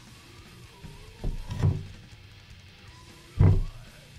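Axis Longboard double bass drum pedal handled on a tabletop: a short clatter of low clunks about a second in, then a single heavier clunk near the end, over faint background music.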